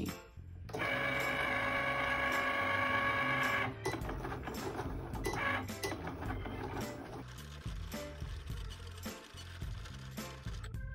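Cricut cutting machine's motor whining steadily for about three seconds as its rollers pull the cutting mat in, then quieter, uneven whirring of the rollers and carriage. Background music plays under it.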